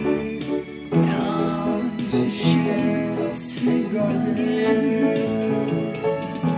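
Upright piano playing a ballad melody with chords, joined by a singing voice with a wavering vibrato on held notes.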